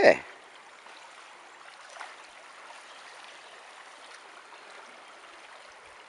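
Shallow creek water running over a stony bed, a steady, even rush.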